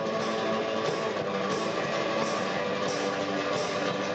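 Live band music led by a strummed acoustic guitar, with an electric guitar in the mix, playing steadily.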